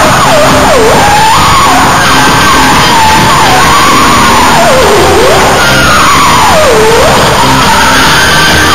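Live rock band playing loudly, with one lead tone swooping up and down in pitch over it, sliding down low and back up several times like a siren.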